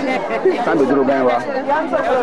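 Speech only: women's voices talking over one another in lively chatter.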